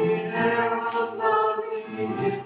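A small vocal group of one man and two women singing a hymn in parts, on held notes that move to new pitches every half second to a second.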